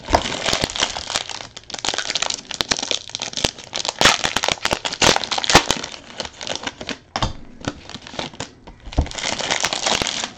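Plastic trading-card packaging crinkling and tearing as it is handled and opened, with dense irregular crackling that eases briefly near the end.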